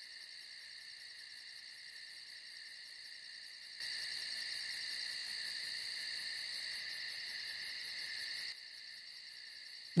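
Night insects, crickets, chirping in a steady, fast pulsing trill. A louder layer of chirping comes in about four seconds in and drops away again about a second and a half before the end.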